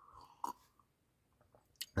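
A faint sip and swallow from a glass, with one short gulp about half a second in and a small mouth click near the end.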